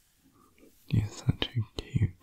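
A man whispering and murmuring close to the microphone, starting about a second in, with a few sharp clicks among the words.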